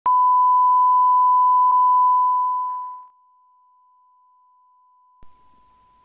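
Television colour-bar test tone: a single steady beep that fades out about three seconds in, followed by a faint click near the end.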